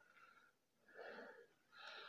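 Faint breathing close to the microphone: two soft breaths, one about a second in and one near the end, over near silence.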